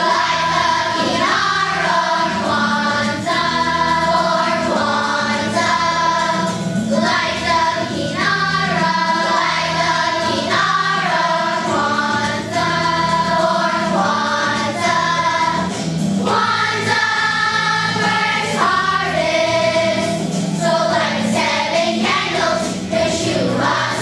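A children's choir singing together in held notes that shift in pitch, without a break.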